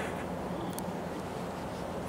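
Steady outdoor background noise at a highway rest area: a low rumble of distant traffic with a light hiss of wind on the microphone.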